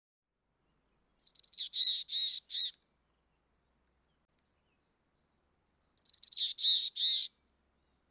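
A bird calling twice, about five seconds apart: each call opens with a quick run of high notes falling in pitch, then three longer, harsher notes.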